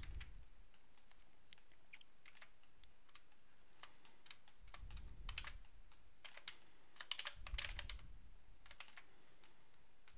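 Faint, irregular clicking of computer keyboard keys, in a few quick bunches in the middle and later part.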